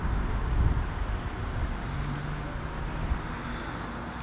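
Outdoor background rumble of vehicle traffic, steady throughout, with a low engine hum for about a second in the middle.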